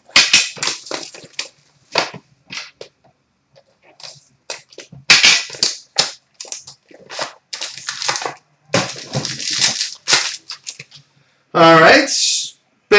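A sealed trading-card box being cut open, its plastic wrap torn off and the box and packaging opened by hand: irregular crinkling, tearing and scraping noises broken by short sharp clicks and knocks.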